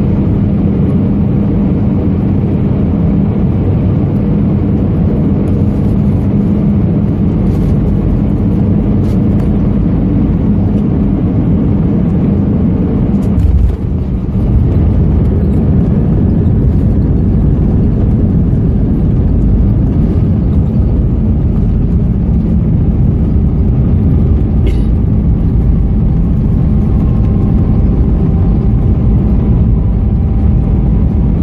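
Cabin noise of an Airbus A320-214 on short final, its CFM56 engines and the airflow making a loud, steady rumble with a low hum. About halfway through there is the touchdown on the runway, and a heavier, rougher rumble of the rollout takes over.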